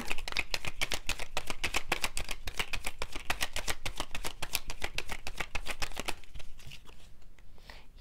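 A deck of tarot cards shuffled by hand, a fast run of card flicks that stops about six seconds in.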